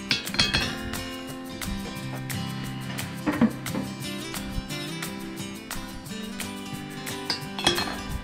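Cast-iron grill cooking grates clanking as they are lifted out of a gas grill and set down on a concrete patio: three sharp clanks, near the start, in the middle and near the end, over steady background music.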